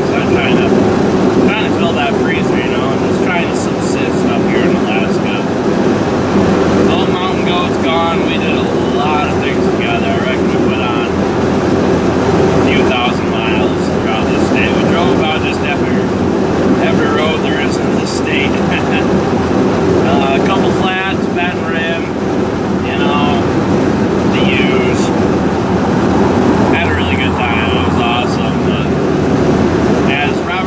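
Steady engine and road drone inside a vehicle's cab, with a man's voice over it.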